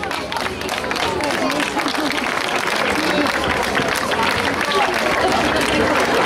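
Audience applauding steadily, with voices talking over the clapping.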